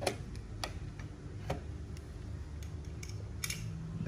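A few sharp, separate clicks from a Yamaha DSP-AX1900 AV receiver as its front-panel controls are worked to switch the input source.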